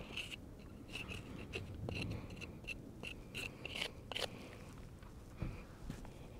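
Hoof pick scraping the sole of a pony's lifted front hoof: a quick run of short, faint scrapes, then a single soft thump near the end.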